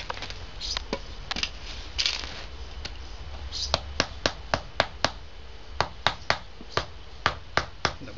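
Mallet tapping small stone paving setts down into a firm bed of basalt grit: a few scattered knocks and scrapes, then about a dozen sharp knocks, two or three a second, with a short pause midway.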